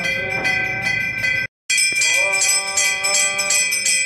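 Temple bells ringing rapidly and continuously during an aarti, a cluster of high ringing tones struck over and over. The sound drops out completely for a moment about one and a half seconds in, then the ringing resumes.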